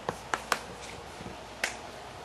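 Chalk knocking on a blackboard while writing: a quick run of sharp taps in the first half-second, and one more about a second and a half in.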